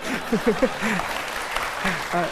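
Studio audience clapping and laughing.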